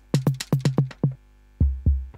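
Sampled drum loop played from a keyboard through Logic Pro's Alchemy sampler. A quick run of bright drum hits stops about a second in, then a deeper, slower run of hits starts.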